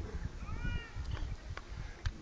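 A single faint, short high call, rising then falling in pitch and lasting less than half a second, over a low steady rumble of background noise.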